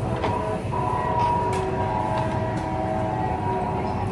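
Steady rumbling restaurant din with a held chord of steady tones that comes in about half a second in and fades near the end, and a few light clicks of plates.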